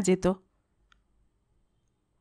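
A woman's narrating voice ends a word, then there is a pause of near silence with a single faint, short click about a second in.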